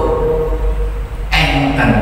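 A man's voice through a microphone and sound system, holding one long chanted note, then breaking back into chanting a little over a second in. A steady low electrical hum runs underneath.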